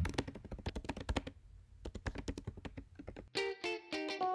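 Computer keyboard typing: a quick run of keystrokes that stops a little over three seconds in. A short music cue of plucked notes follows.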